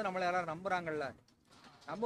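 Only speech: a man talking, with a brief pause a little past halfway through.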